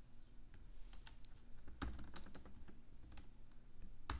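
Typing on a computer keyboard: an irregular run of light key clicks as a line of code is typed.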